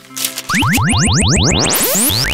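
Cartoon transition sound effect: a short swish, then from about half a second in a rapid string of rising synthesized chirps, several a second.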